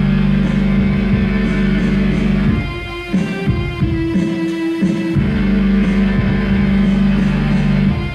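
Live music played on two electronic keyboards: long held chords over a low sustained bass, the pattern shifting and repeating every couple of seconds.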